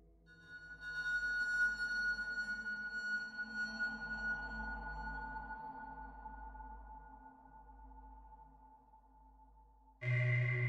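Mutable Instruments modular synthesizer sounding one long ringing note with many high overtones. It swells in during the first second and then slowly dies away: the high overtones fade out after about six seconds, and a lower tone lingers almost to the end.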